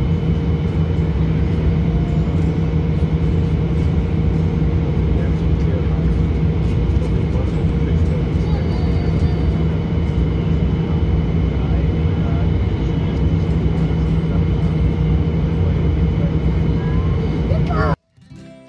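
Airliner cabin noise: a loud, steady drone with a low hum and faint high whistles, and faint voices in the cabin.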